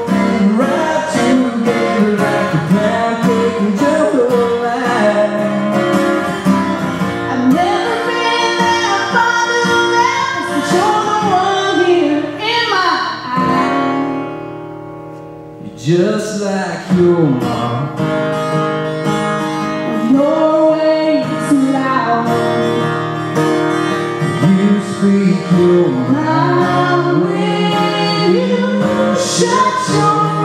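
A woman singing a country song live to a strummed acoustic guitar. About halfway through, the music thins to one held note that fades away, then the singing and playing pick up again.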